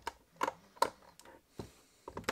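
A few sharp plastic clicks and taps from the black plastic case of an Xbox One power brick being handled and pressed together during reassembly.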